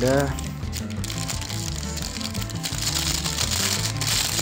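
Background music with a steady beat, and from about halfway a clear plastic bag holding a USB cable rustling as it is handled.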